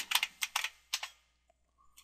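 Computer keyboard typing: a quick run of about six keystrokes in the first second as a password is entered, with a single faint click near the end.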